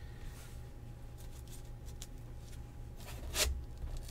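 Quiet handling of trading cards in a cardboard card box, with a short brushing scrape about three and a half seconds in, over a steady low hum.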